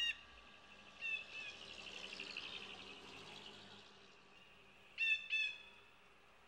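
Faint bird calls: short calls near the start and about a second in, a quick chattering run around the middle, and two clearer calls close together near the end.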